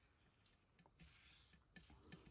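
Near silence, with a faint, brief rubbing about a second in: a bone folder burnishing a fold in cardstock.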